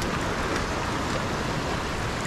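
Sea surf washing and foaming over a rock ledge, a steady hiss of white water.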